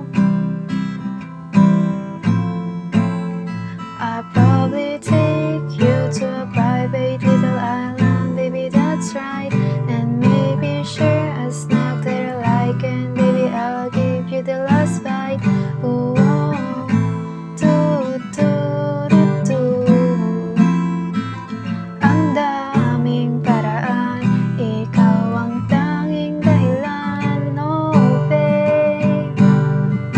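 Acoustic guitar strummed in a steady down-down-up-down-up-down-down pattern through the chords D minor, G, C, F and D minor, E minor, F, G.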